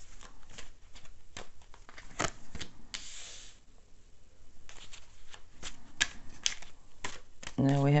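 Tarot cards being handled and laid down one by one: a run of sharp card snaps and flicks, with a short sliding rustle about three seconds in.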